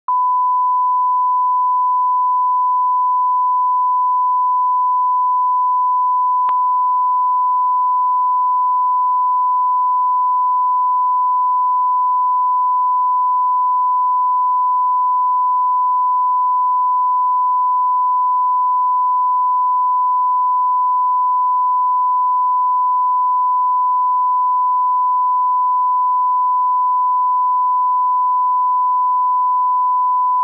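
Continuous 1 kHz reference tone, a single pure pitch held unbroken at a constant level. It is the broadcast line-up tone that runs with colour bars for setting audio levels.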